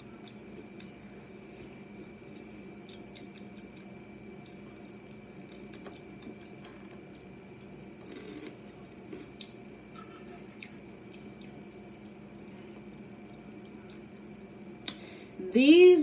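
Dry Lucky Charms Honey Clovers cereal being chewed: faint, scattered crunches at irregular intervals.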